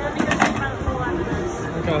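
Background talk in Spanish, with a short sharp burst of noise about a quarter of a second in.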